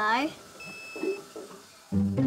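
A washing machine's control panel giving a single electronic beep about half a second long, the signal that the wash cycle has finished.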